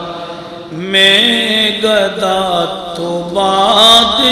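A man's voice chanting a devotional recitation in long, drawn-out melodic phrases that bend in pitch, growing louder about a second in. A steady high-pitched ring sounds alongside the voice.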